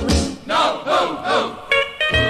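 Several voices shouting together in a few rising-and-falling calls during a break in a rockabilly record, with the bass dropped out. The band comes back in with sustained guitar notes near the end.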